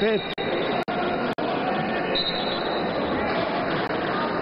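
Indoor basketball hall ambience: steady noise of the hall and the game with voices in it. The sound cuts out briefly three times in the first second and a half.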